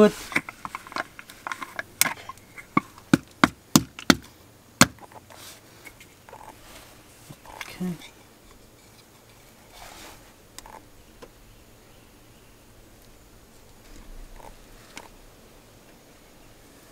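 Sharp plastic clicks and knocks from handling a bottle of transmission fluid and a new spin-on transmission filter while the filter is pre-filled, about half a dozen in the first five seconds, then only a few faint handling sounds.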